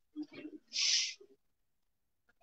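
A man's soft voice: a few brief low murmurs, then a short hiss about a second in, lasting about half a second.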